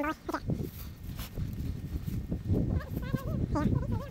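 Indistinct, wavering voice sounds, mostly near the end, over a steady low rumble.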